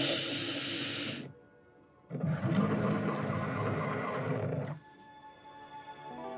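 Cricut Maker 3 cutting machine's motor and rollers running as it feeds Smart Vinyl through to measure the roll. The whirring stops about a second in and resumes for a second run of about two and a half seconds.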